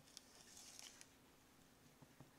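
Near silence, with a faint soft scrubbing from toothbrush bristles being worked in wet black paint on a palette during the first second or so.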